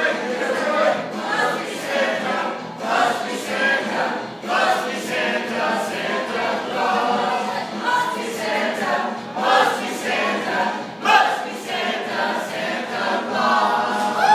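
A group of voices singing a Christmas carol together.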